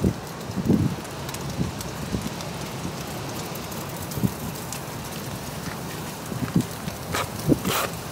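Steady outdoor noise with wind gusting on the microphone, and two sharp clicks near the end.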